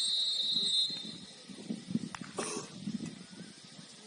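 Referee's whistle blown in one long, steady blast of about a second.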